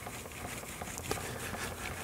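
Steel card scraper, held edge-down in a wooden block, rubbed back and forth on a diamond sharpening plate: a faint, steady scraping as the edge is honed flat and the file marks are worked out.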